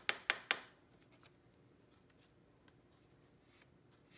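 Three quick sharp taps in the first half second as cardstock is knocked against a plastic embossing-powder tray to shake off excess copper embossing powder, followed by faint handling sounds of paper.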